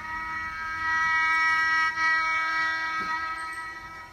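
Instrumental music holding one long note, steady in pitch.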